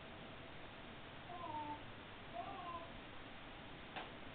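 Siamese kitten meowing twice, two short meows about a second apart, each sliding down in pitch.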